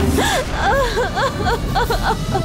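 A woman sobbing and gasping, her voice breaking into short rising-and-falling cries several times a second.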